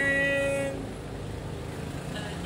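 A man's voice holding one long, steady, fairly high note, which cuts off under a second in, followed by a fainter steady background.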